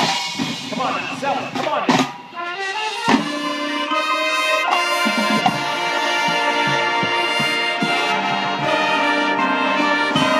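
Marching band playing, led by the brass. In the first three seconds the music is busy with quick moving runs and a couple of sharp hits. It then settles into long, full brass chords held to the end.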